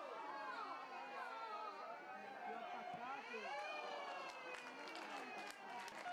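Several people shouting and calling out over one another, with no clear words. A few short sharp knocks come near the end.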